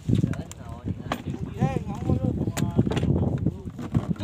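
Faint voices talking over a steady, pulsing low rumble, with a few sharp clicks.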